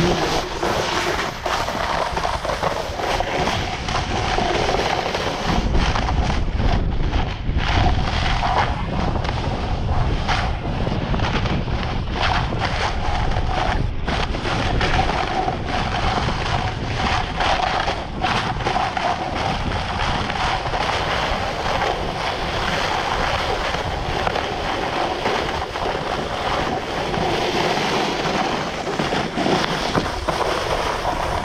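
Wind rushing over the microphone of a camera carried by a skier on a fast descent, with skis hissing and scraping over snow and many short scrapes from the edges.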